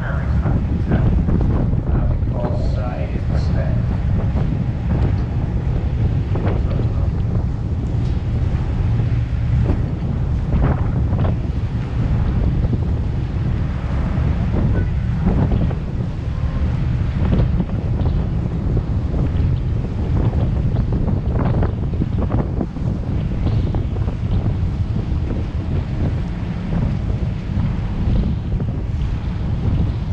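Wind buffeting the microphone on the open deck of a moving river tour boat: a steady low rumble with the rush of the boat's wash on the water underneath.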